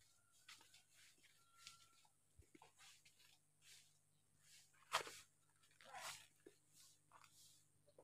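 Near silence, broken by a short faint rustle or click about five seconds in and a weaker one about a second later.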